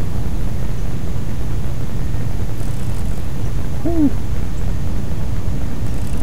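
A steady low rumble with a faint hum in it, unbroken throughout.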